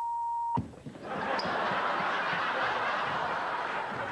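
A steady one-tone censor bleep over a swear word, cut off with a click about half a second in, followed by a studio audience laughing.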